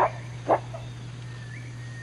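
Gorilla giving two short calls about half a second apart, over a steady low hum.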